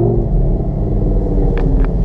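Audi R8's engine running while the car drives, heard from inside the cabin over low road rumble. Its note eases a little right after a short rise, then holds fairly steady.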